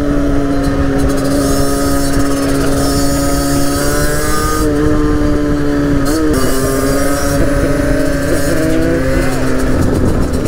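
Derbi Senda Xtreme 50cc two-stroke motorcycle engine held at high, steady revs while riding, its pitch dipping and wobbling briefly about six seconds in, over wind rumble on the microphone.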